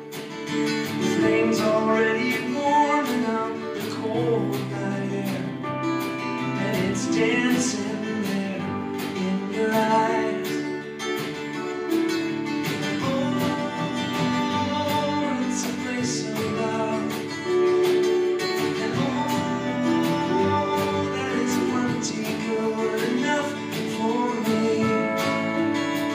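Acoustic guitar strummed in a steady rhythm, playing a song's chord accompaniment.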